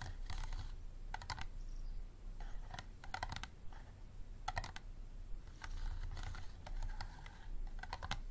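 Fingernails tapping on an empty hard plastic water bottle in quick little clusters of clicks, with softer scratching of nails over its ridged sides in between.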